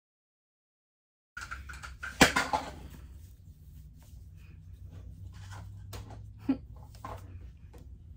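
After about a second of dead silence, rustling and handling noise of a fabric sleep-headphone headband being pulled on over the head, over a low hum. A sharp knock about two seconds in is the loudest sound, and there is a smaller knock near the end.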